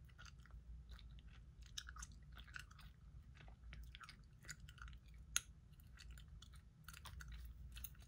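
Faint gum chewing close to the microphone: small, irregular wet clicks and smacks, with one sharper click about five seconds in.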